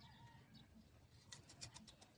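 Near silence outdoors, with a few faint ticks about a second and a half in.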